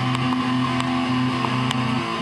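Distorted electric guitar playing low sustained notes, the pitch shifting every half second or so, with a few faint pick clicks.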